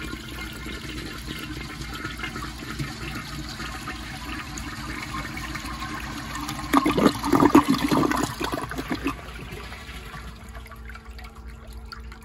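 1955 Eljer Duplex toilet flushing, its bowl water swirling down the trapway. There is a louder, choppy surge of water about seven seconds in, then the sound quiets down.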